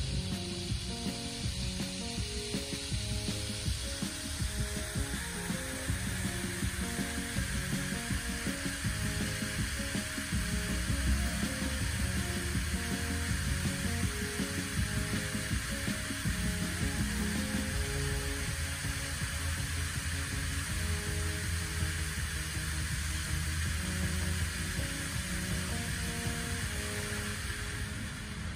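Music with short repeated notes over a steady hiss of splashing fountain water; the water hiss grows fuller about four seconds in.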